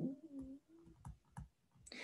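Faint clicks and ticks of a stylus writing on a tablet screen, with a couple of sharper taps past the middle. It opens with a short, quiet hummed 'mm' from a voice.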